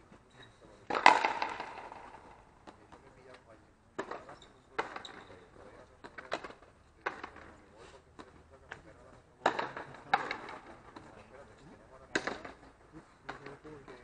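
Frontenis rally: a hard rubber ball smacked by rackets and hitting the fronton wall, a string of sharp cracks about once a second or so, the loudest about a second in, each ringing briefly off the walls.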